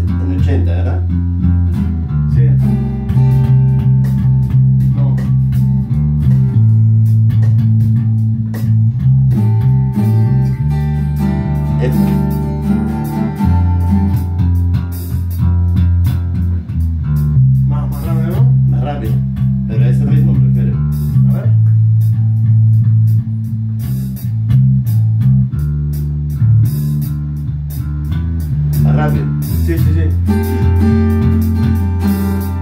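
Electric bass guitar and guitar playing together, the bass stepping through low notes under strummed chords.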